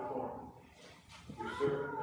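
A man's voice speaking at the altar, the words not made out.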